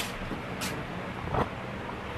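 Steady low room hum, crossed by a few short rustles and light knocks as a person moves about in loose clothing, the loudest about halfway through.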